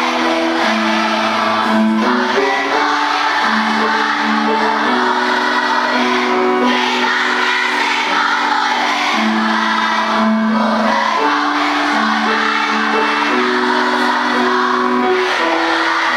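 A large group of schoolchildren singing a song together as a choir, a melody of long held notes at a steady, loud level.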